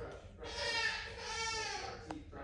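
A child's voice making a drawn-out, hesitant vocal sound with a slowly wavering pitch, starting about half a second in and fading near the end.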